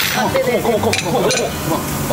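Pork sizzling on a tabletop grill under overlapping table voices, with a couple of sharp clinks of glasses and tableware about a second in.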